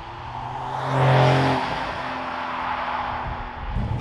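Porsche 911 (992) Carrera S with its twin-turbo flat-six passing close by. Tyre noise and a steady engine note swell to a peak about a second in, then fade away as the car moves off.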